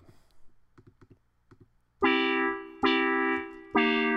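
Soundtrap software synthesizer presets sounding a sustained chord three times, struck about a second apart in the second half, each held then released. A few faint clicks come before the first chord.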